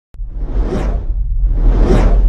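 Intro sound-effect whooshes: two swelling whooshes, the first rising and falling within the first second, the second building up near the end, over a deep, steady bass rumble.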